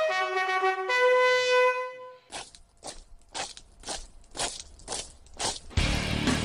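Bugle call: two long held notes, the second one higher, ending about two seconds in. A run of irregular sharp crunching knocks follows.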